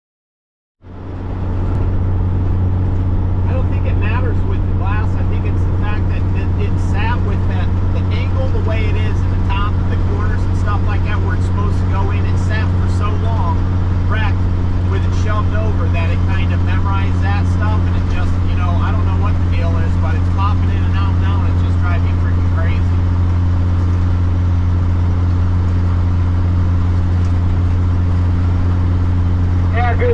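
Cabover semi-truck heard from inside the cab while cruising at highway speed: a loud, steady, low engine drone with an even hum. The sound cuts in abruptly about a second in, and faint voices run over the drone.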